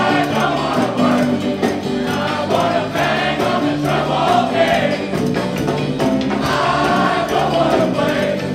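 Live rock band performance with a large group of untrained singers singing together in chorus into microphones, backed by electric guitar and shaken tambourines.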